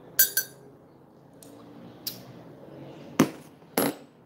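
A coffee cup clinking twice in quick succession, followed by a few faint ticks and then two sharper knocks about half a second apart near the end.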